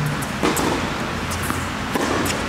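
Tennis balls popping off racket strings and bouncing on an indoor hard court during a rally: a few sharp knocks, the loudest about half a second in, over a steady low hum.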